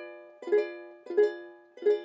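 Ukulele chord strummed three times, about one strum every 0.7 s, each left to ring out; the same chord each time, the D diminished shape being demonstrated.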